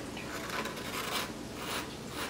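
A metal spoon spreading butter across the cut face of a toasted hoagie roll, making a few soft scraping strokes.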